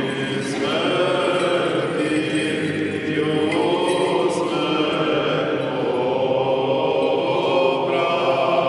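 Choir singing Orthodox liturgical chant, several voices holding long sustained notes.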